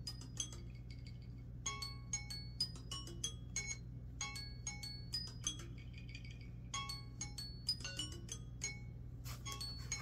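An alarm tone playing a repeating melody of bright, chime-like plinked notes, in phrases of a couple of seconds with short gaps between them, over a faint steady low hum.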